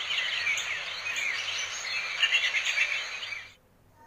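Birds chirping over a steady outdoor hiss, with many quick, high chirps, cutting off shortly before the end.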